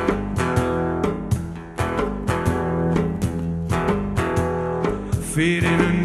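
A live acoustic band playing, with an acoustic guitar strumming chords in a steady rhythm. A wavering melody line comes in over it near the end.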